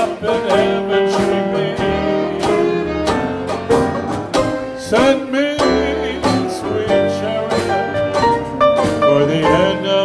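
Live small jazz band playing a tune: a trumpet carries the melody over strummed rhythm chords, upright bass and drums.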